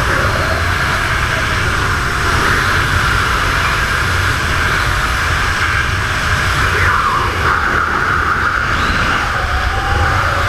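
Steady, loud wind rushing over a handheld action camera's microphone during a tandem skydive freefall.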